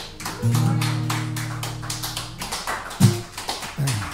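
Acoustic guitars strumming chords with quick, percussive strokes: one chord rings about half a second in, then two short, sharp chords are struck near the end.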